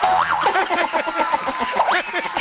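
Studio audience laughing and clapping, with edited-in comic sound effects whose pitch swoops up and down, one rising sharply near the end.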